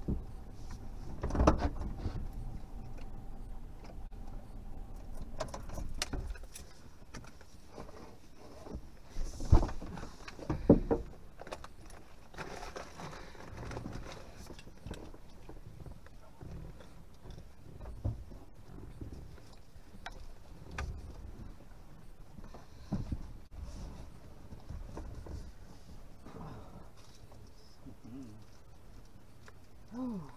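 A few knocks and clicks of things being handled inside a parked car's cabin, over a low background. The loudest come about a second and a half in and twice around ten seconds in, with smaller ticks scattered between.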